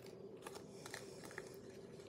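Faint rustling and a few light clicks of small items being handled while a pack of wet wipes is searched for, over a faint steady hum.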